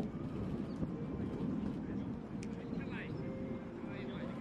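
Outdoor ambience on a rugby training pitch: a steady low rumble like distant traffic or aircraft, with indistinct voices of players and coaches in the background. A brief high-pitched call comes about three seconds in.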